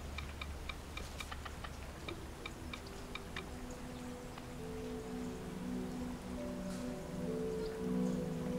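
Smartphone touchscreen keyboard clicking as a text message is typed: a run of small, even ticks, about three a second, that stops after a few seconds. Soft background music with slow, held low notes comes in around the middle.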